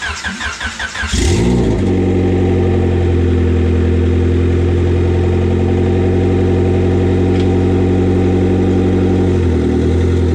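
Honda Civic's D16A four-cylinder engine cranked over by the starter, catching about a second in and then idling steadily. The idle note wavers briefly near the end.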